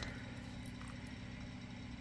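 Quiet, steady low hum of room background noise, with no distinct handling sounds above it.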